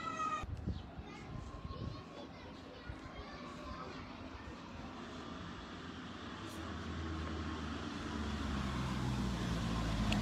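Faint outdoor street ambience on a phone microphone, with distant voices. A low rumble builds over the last few seconds.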